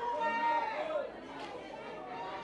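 Faint voices in the background, chatter in the first second that fades to a quiet murmur.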